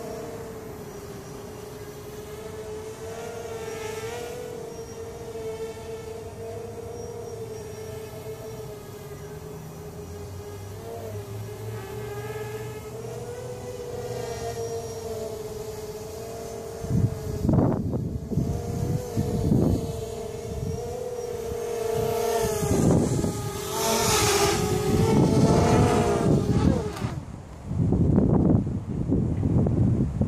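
Hovership MHQ quadcopter's electric motors and propellers buzzing steadily as it flies overhead, the pitch wavering slightly with throttle. From about halfway in, gusts of wind buffet the microphone in loud bursts, and near the end they drown out the buzz.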